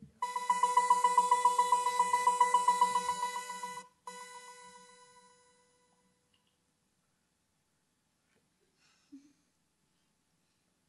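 Opening of an electronic music track played over the hall's speakers: a ringing electronic tone that pulses about nine times a second for nearly four seconds. It breaks off briefly, then comes back and fades out over the next two seconds. Silence follows, apart from a faint short sound near the end.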